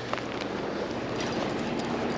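Steady rushing of flowing creek water, with a few faint clicks over it.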